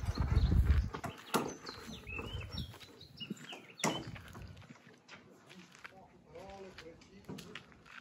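Goat bleating briefly and faintly about six seconds in, among a few sharp knocks and faint chirps.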